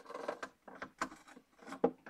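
Markers being handled: a few short clicks and rustles, with the loudest clack near the end.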